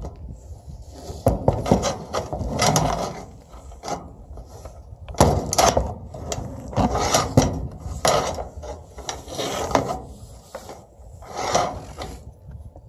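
A goat close to the microphone makes irregular rough rasping and rubbing noises with clicks, in bursts every second or so.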